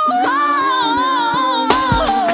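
A female voice singing a winding, ornamented melody with little or no accompaniment.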